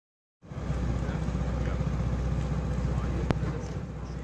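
A motor vehicle engine running steadily at idle, a low even rumble, with one sharp click about three seconds in.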